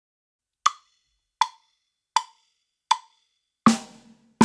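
Four evenly spaced count-in clicks at 80 beats per minute, then the first snare drum stroke near the end, the loudest sound, with a ringing tone.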